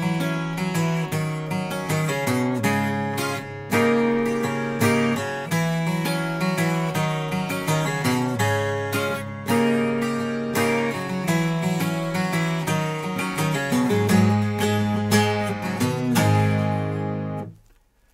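Maton Messiah twelve-string acoustic guitar, tuned down to E-flat, playing a busy passage of picked single notes mixed with strummed chords. It stops near the end.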